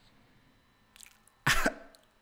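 A man coughs once, sharply, about one and a half seconds in; the moments before are near silent.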